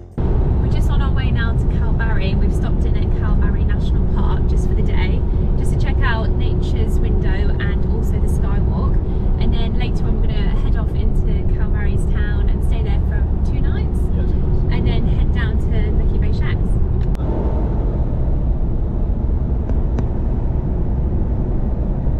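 Steady road and engine rumble inside the cabin of a moving Toyota Hilux, with a woman's voice talking over it until a few seconds before the end.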